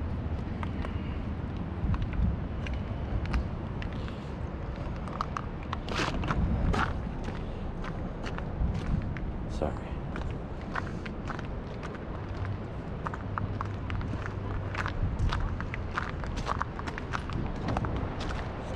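Footsteps on a gravelly, muddy creek bank: a string of irregular crunches and clicks.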